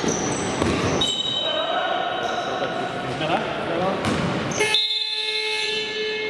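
Sounds of an indoor basketball game in an echoing hall: a ball bouncing, shoes squeaking and players calling out. About three-quarters of the way through, a loud held horn-like tone sounds as play stops.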